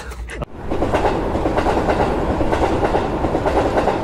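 Train running on rails: a steady rolling noise that starts abruptly about half a second in and holds at an even level, with no voice over it.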